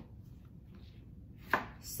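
Chef's knife cutting jalapeño peppers on a cutting board: a few faint taps, then one sharp knock of the blade on the board about one and a half seconds in.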